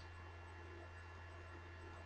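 Near silence: a faint, steady low electrical hum under the room tone.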